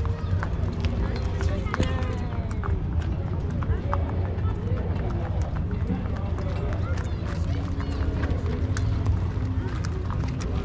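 Outdoor pony-ride ambience: indistinct people's voices over a steady low rumble, with scattered footsteps and soft hoof-falls as ponies walk the ring on dirt.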